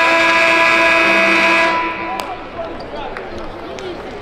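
Arena game-clock horn sounding one steady, loud blast of several tones at once for just under two seconds, then cutting off: the buzzer that ends a period as the clock runs out.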